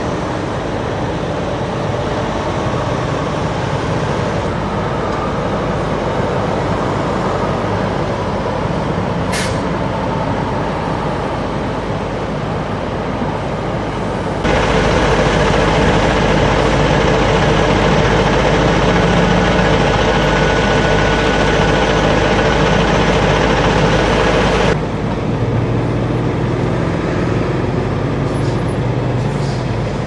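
Steady vehicle engine and road noise from freeway traffic and emergency vehicles, with a brief hiss about nine seconds in. The noise is louder and deeper from about fourteen to twenty-five seconds in.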